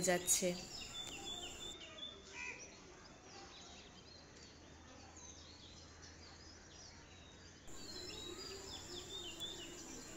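Faint birds chirping in the background, many short high calls scattered through, over a faint steady low hum.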